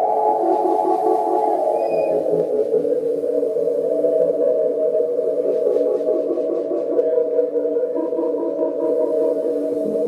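Stage keyboard playing sustained, ambient synthesizer chords through effects; the upper notes glide down in pitch about two seconds in, then the chord holds steady.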